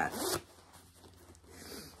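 Zipper on a child's Timberland jacket being worked by hand, a faint rasping that grows toward the end; the zipper is stuck, which she takes for a busted zipper.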